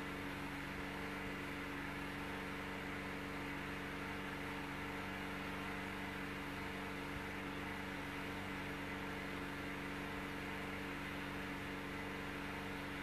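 Steady low machine hum with a constant hiss underneath.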